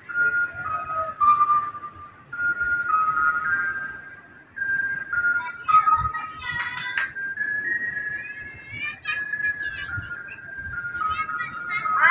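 Street ice-cream vendor's jingle (es dung-dung, also called es nong-nong): a simple tune of single high notes, each held briefly, stepping up and down.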